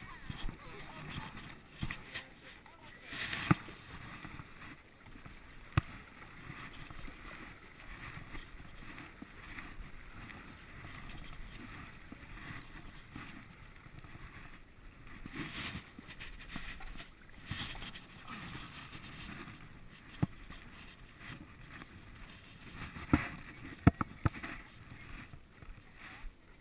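Stand-up paddleboard paddle dipping and pulling through calm river water, with splashing and dripping in swells, and a few sharp knocks.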